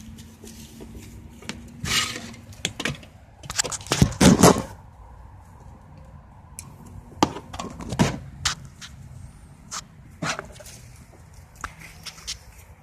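Irregular knocks and clatters of handling as battery-charger leads and clips are picked up and moved about, loudest about four seconds in, with a faint low hum in the first few seconds.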